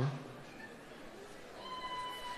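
One high-pitched, held whoop from an audience member cheering for a graduate, starting near the end and level in pitch.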